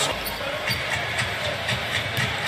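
Basketball dribbled on a hardwood court, about two bounces a second, over a steady arena background.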